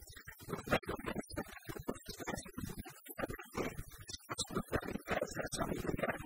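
A woman talking in Italian; her voice sounds choppy and broken up.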